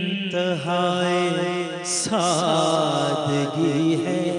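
A man singing a devotional kalaam in praise of Ali, holding long notes that bend and waver.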